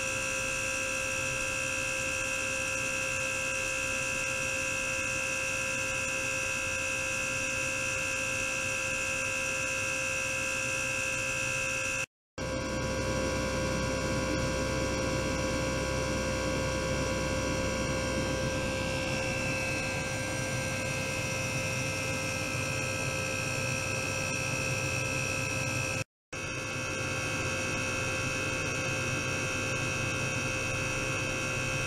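Steady electronic hum made of several unchanging tones, with a high whine over it, from an ultrasonic oscillation system running in a water tank. The sound cuts out briefly twice. After the first break there is more low rumble, and the high whine wavers for a moment in the middle.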